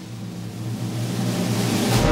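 Symphony orchestra holding a quiet, sustained low note that swells steadily louder in a crescendo.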